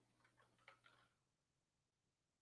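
Near silence with about four faint, short clicks in the first second, then only low room hiss.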